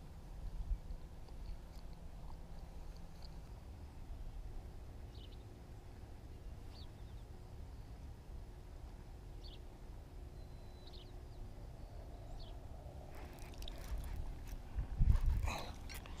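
Low wind rumble on the camera microphone, with a few faint, short high bird chirps spaced a second or more apart. In the last few seconds louder rustling and handling noise builds, with one sharper burst, as the rod and reel are moved.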